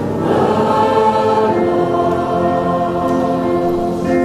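A congregation singing a hymn together, holding long notes.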